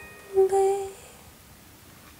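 A woman's voice hums a short closing note about half a second in, while the last glockenspiel strike fades out. Then the room goes quiet.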